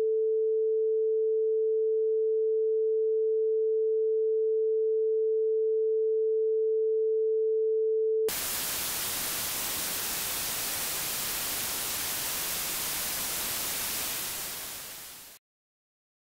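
A steady electronic sine tone at one mid pitch, cut off about eight seconds in by a sudden hiss of white noise, which fades out shortly before the end.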